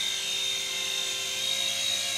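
Small electric RC helicopter (Brookstone gyro-copter) running, its motors and rotors making a steady whine of several held tones.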